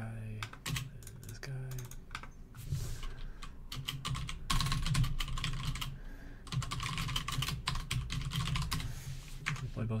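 Typing on a computer keyboard: a steady stream of key clicks, in quick runs with short gaps, as a command line is typed out.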